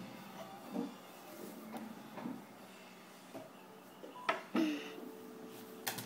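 Light clicks and taps from an insulin syringe being flicked with the fingers to clear air bubbles. There is a sharper click a little past four seconds and another near the end.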